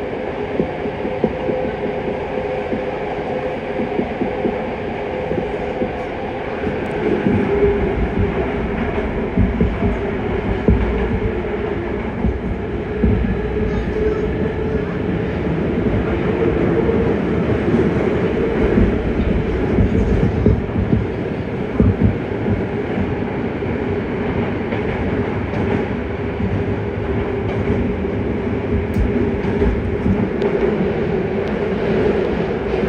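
Yokohama Blue Line 3000A subway train running through a tunnel, heard from inside the car: a steady rumble of wheels on rail with frequent irregular thumps, heaviest through the middle, over a steady mid-pitched hum.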